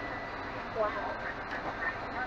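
Soft rustling and scraping of a cardboard toy box as its end flap is worked open by hand.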